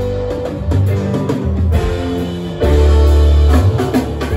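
Live rock band playing an instrumental passage on electric guitar, electric bass, drum kit and keyboards. A loud held bass note comes in about two and a half seconds in.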